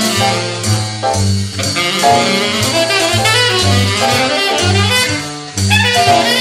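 Jazz film-score music: a saxophone-led ensemble with brass over a moving bass line, with a brief drop in level about five and a half seconds in.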